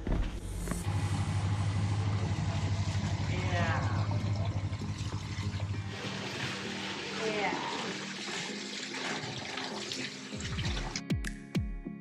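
Water running from a stone fountain's spout into its basin, splashing over a hand held in the stream, after a first half filled by a steady low hum. Background music with a regular beat comes in near the end.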